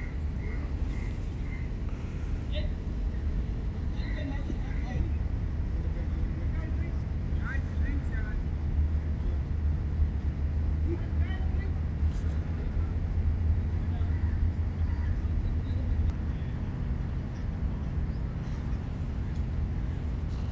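Steady outdoor background rumble, with a few faint, short high chirps scattered through it.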